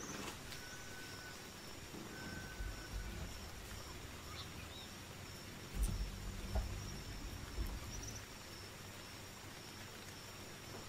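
Faint jungle-style ambience track with a steady high chirring of insects. Low bumps and knocks come about two and a half seconds in and again from about six to eight seconds in, as the webcam is handled.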